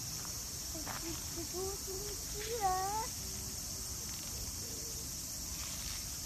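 Steady high-pitched drone of insects in summer vegetation. A young child's short, sing-song vocal sounds rise over it between about one and three seconds in, the loudest a rising note near the three-second mark.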